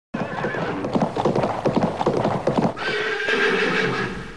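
Sound effect of horses galloping: a rapid clatter of hoofbeats, then a long horse whinny from a little under three seconds in.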